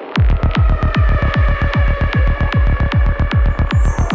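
Dark psytrance: after a noisy build-up, a fast, even kick drum and rolling bassline drop in just after the start, with held synth notes above.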